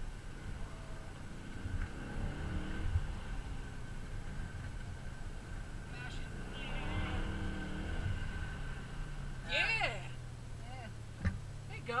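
BMW E39 M5's 4.9-litre V8 heard from inside the cabin, revving up and down as the car accelerates and eases off between corners. Near the end there is a single sharp click.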